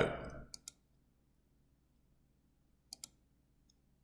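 Two quick pairs of faint clicks in a near-quiet room, one pair about half a second in and another about three seconds in: a computer mouse button clicking as the presentation slide is advanced.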